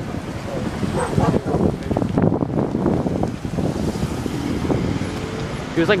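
Cars driving past on a street: steady tyre and engine noise from passing traffic.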